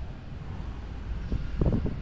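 Steady low background rumble, with a brief louder burst of sound about a second and a half in.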